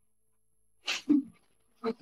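Silence, then about a second in a single short vocal sound from a person: a brief breathy burst with a quick voiced tail, like a gasp or a clipped exclamation.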